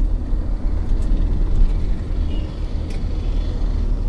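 Steady low rumble of a moving car heard from inside the cabin: engine and road noise, with a couple of faint light clicks.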